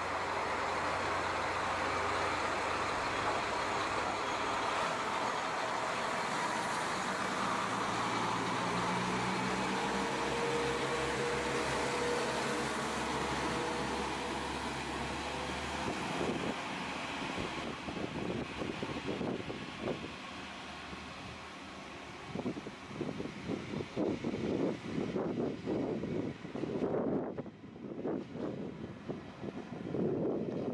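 Diesel railcar engine running as the train pulls out, its pitch rising as it gathers speed, then fading away after about sixteen seconds. Gusty wind on the microphone follows.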